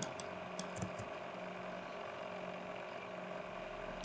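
Steady low electrical hum with a few faint, short clicks in the first second.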